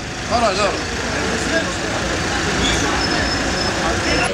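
A van's engine idling close by in a steady, dense rumble, with a voice cutting in briefly about half a second in.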